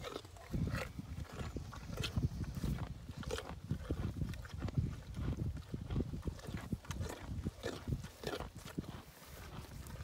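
A pony and dogs sniffing and breathing at close range, nose to nose, with scattered clicks.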